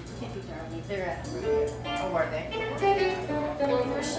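Several people chatting at once in a large room, with a guitar playing softly underneath and a steady low hum.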